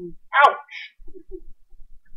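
Speech only: a man exclaims a single short 'ouch', falling in pitch, ending in a brief hiss.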